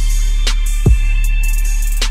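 Instrumental trap beat: a held deep 808 bass under steady high synth notes, with a snare hit about half a second in and a deep kick that drops in pitch just before the one-second mark.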